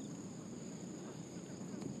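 Outdoor ambience: a steady, high-pitched insect drone over faint, even background noise.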